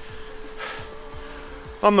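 A pause in a man's speech filled by a faint breath, over a steady held note of background music; his speech resumes near the end.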